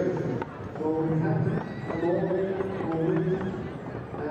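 A man talking over a showground public-address loudspeaker, with a stallion neighing about two seconds in.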